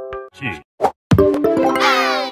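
A logo jingle's held chord fades out, then come a few short pops. About a second in, a new cartoon-style logo jingle starts with chords and quick sliding tones.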